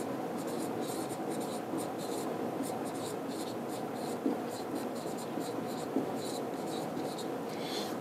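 Writing sounds: a writing tool scratching on a surface in many quick, uneven strokes, with a couple of light taps about four and six seconds in.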